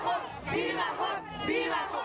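A crowd of demonstrators shouting, many voices overlapping at once.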